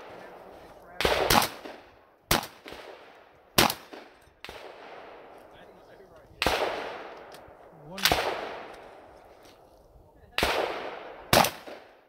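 About eight gunshots from a shooter working through a course of fire, at an irregular pace with some shots in quick pairs. Each shot has a long echoing tail.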